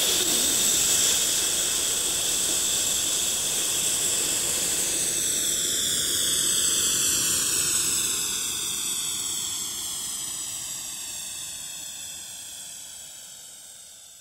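Electroacoustic music: a dense hiss of noise like a jet's roar that, about five seconds in, takes on a falling phasing sweep, then fades slowly away over the last several seconds.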